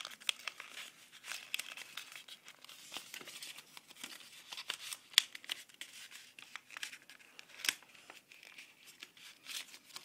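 Paper crinkling and crackling in the hands as the flaps of an origami flower are folded and pushed in, with irregular sharp crackles. The loudest crackles come about five seconds in and again near eight seconds.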